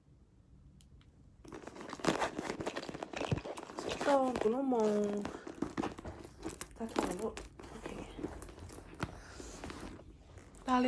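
Crinkling and rustling that starts about a second and a half in and goes on irregularly. A person's voice rises and falls briefly near the middle.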